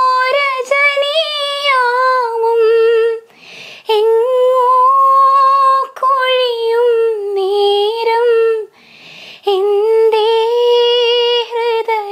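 A woman singing a slow song unaccompanied, in three long phrases of held, wavering notes with short pauses for breath between them.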